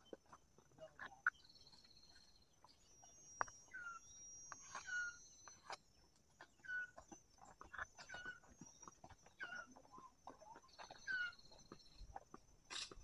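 Faint bird calls: short calls that dip in pitch, repeating about every second or so, with a thin high steady tone at times and scattered light clicks.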